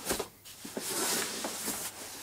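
A large cardboard carton being turned upright on a wooden tabletop: a short knock, then about a second and a half of steady scraping as the cardboard slides and rubs.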